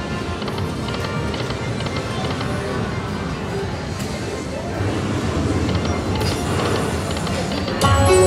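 Lightning Link Happy Lantern slot machine playing its reel-spin music and sound effects over the murmur of a casino floor, with a louder burst of tones near the end as a line win lands.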